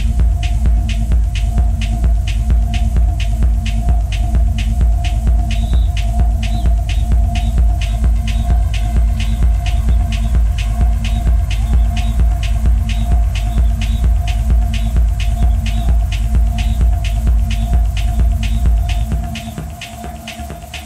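Live techno: a heavy, throbbing bass under a steady held mid-pitched drone, with a hi-hat ticking evenly about four times a second. About a second before the end the bass drops out and the music gets quieter, a breakdown in the track.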